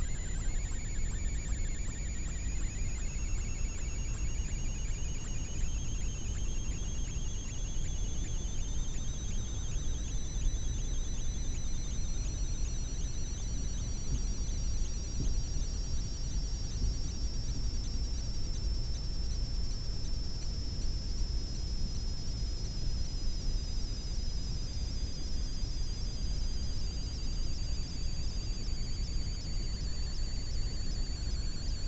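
Two high, thin electronic tones slowly sliding in pitch, one falling and one rising until they cross, over a steady low hum.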